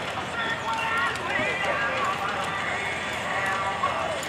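Many voices talking at once, a crowd's chatter with no single clear speaker.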